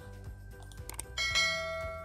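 A bell-like notification chime, the sound effect of an animated subscribe-button reminder, rings out suddenly about a second in and slowly fades, just after a short click. Soft background music runs underneath.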